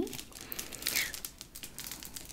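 A quilted leather handbag and its chain strap being handled: soft crinkling and rustling, with a few faint scattered ticks.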